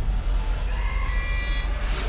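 Cinematic sound design for a promo: a deep, steady bass rumble, a whoosh right at the start, and a bright sustained tone that swells in a little under a second in and fades near the end.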